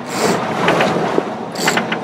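Steady running noise of a charter fishing boat underway at trolling speed, with a few sharp clicks and rattles about a second and a half in.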